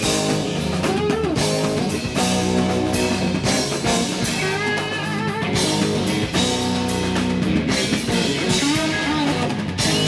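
Live rock band playing an instrumental passage: electric guitars and drum kit, with a bowed electric upright instrument. Lead guitar notes waver and bend in the middle of the passage.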